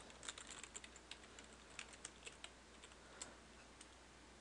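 Faint computer keyboard typing: a run of quick, irregular key clicks that thins out toward the end.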